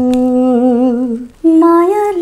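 Unaccompanied singing voice holding one long wavering note, breaking off briefly about a second and a half in before a higher note begins.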